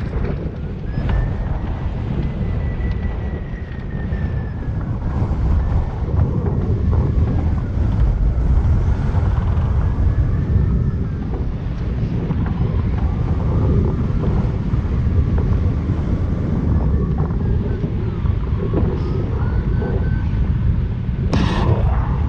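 Strong wind rushing over the camera microphone on a hang glider's control bar during launch and flight in gusty, turbulent air, the rush rising and falling. A single sharp knock near the end.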